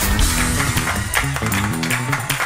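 Live gospel praise-break music from a church band: low bass and guitar notes stepping downward in pitch over drum and cymbal hits.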